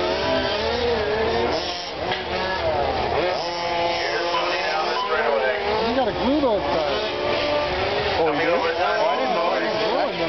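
Whine of several 1/10-scale radio-controlled Formula 1 cars racing, their electric motors rising and falling in pitch as they accelerate and brake through the corners, several overlapping at once, with one rising and falling sharply as it passes close about six seconds in.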